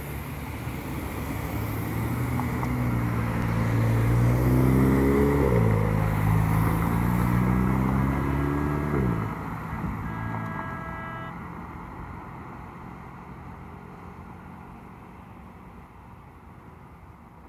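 A car accelerating through the intersection, its engine pitch climbing, dropping at a gear change, climbing again and then falling away as it passes. Passing road traffic fades after it, with a brief high steady tone a little past halfway.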